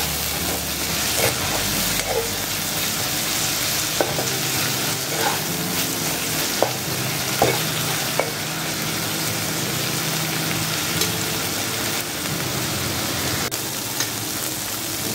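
Sliced onions, tomatoes and green chillies sizzling steadily in hot oil in a nonstick kadai, stirred with a metal spatula that scrapes and knocks against the pan several times.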